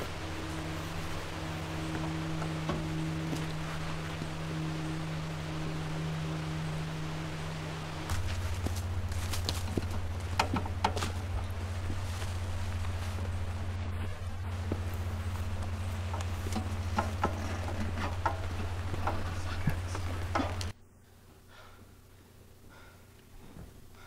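A steady low drone of held tones that shifts to a different pitch about eight seconds in, with scattered light clicks and rustles over it in the second half; it cuts off suddenly shortly before the end.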